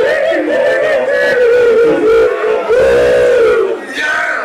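Live rock band playing loud, led by a wavering melody line held in long, gliding notes.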